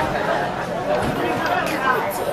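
Several people chatting at once, their voices overlapping, with no single clear speaker.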